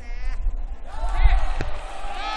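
A gymnast's parallel bars dismount landing on the mat with a thud a little over a second in, with shouts and cheers from the crowd rising around it.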